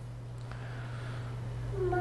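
A pause between spoken phrases: only a steady low hum and faint room noise.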